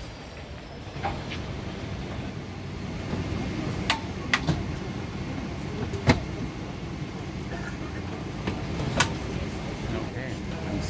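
Airliner cabin during boarding: a steady low rumble broken by a few sharp clicks and knocks of luggage and overhead bins being handled, the loudest about six seconds in.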